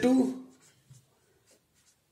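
A marker writing on a whiteboard: a few faint, short strokes about a second in, just after a man's voice finishes a word.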